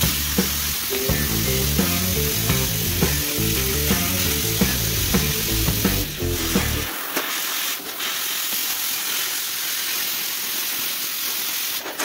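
Plasma cutter running as its torch cuts a circle out of sheet steel: a steady hiss that starts at once and stops near the end. Background music with a beat plays under it for about the first seven seconds.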